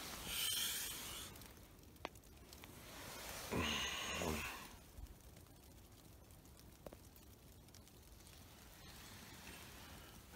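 Rustling of a sleeping bag and gear as someone shifts about and handles the camera, with a short murmur of a voice about four seconds in, then only a few faint ticks.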